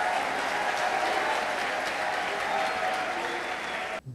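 Congregation applauding, a steady dense clatter of clapping with a few voices calling out among it, easing slightly toward the end.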